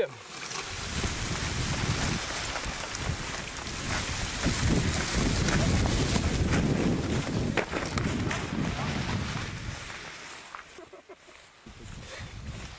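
Wind buffeting the microphone and wheels rumbling over rough grass as a wheeled paragliding launch cart is run along the ground for takeoff. The noise builds over the first couple of seconds, holds with a few knocks, then dies away near the end as the cart comes to a stop.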